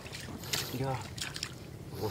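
A brief bit of a person's voice about a second in, over a low background noise with a few clicks.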